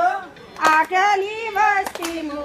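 A group of women singing a folk song together, the melody held and gliding between notes, with a few sharp hand claps, two close together about two-thirds of a second in and another near the end.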